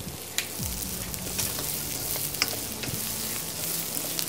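Sliced onions, garlic and green chillies sizzling in hot oil in a nonstick kadai while being stirred with a plastic spatula, with a steady hiss and a few sharp clicks of the spatula against the pan.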